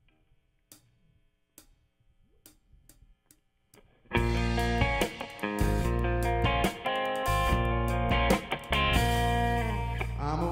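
A few faint, evenly spaced clicks, then about four seconds in a blues trio comes in loud all at once: electric guitar, bass guitar and drum kit playing the opening of a song.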